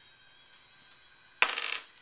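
A six-sided die rolled onto a wooden table: one sudden clatter about a second and a half in, rattling briefly before it settles.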